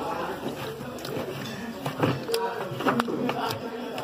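Voices of people talking in the background, with a few sharp knocks of a knife coming down on a wooden cutting board about halfway through and near the end.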